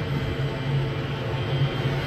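A steady low mechanical hum with a constant noisy wash over it, unchanging throughout.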